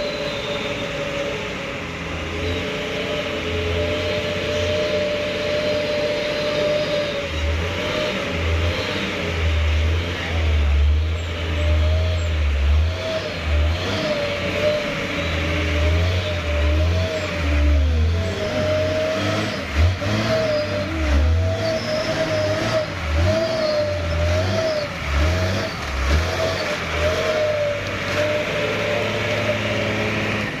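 Hino 260 JD ten-wheel truck's diesel engine pulling hard under load on a muddy climb. A steady, wavering whine rides over the engine, and heavy low thumps come and go through the second half.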